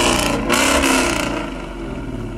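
Ford Mustang's engine revving with loud blasts from the exhaust, one about half a second in, then dying away. The fire and sparks from the tailpipes come from an add-on device that sets the exhaust gas alight, not from engine power.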